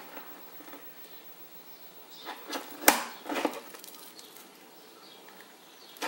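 A few small clicks and clinks, clustered near the middle with the sharpest about three seconds in: jewellery pliers working a jump ring and the bracelet's metal findings and acrylic beads knocking together.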